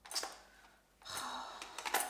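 Plastic and metal clicks and rattles as whisk beaters are pushed into a Braun hand mixer, a sharp click just after the start and several more near the end.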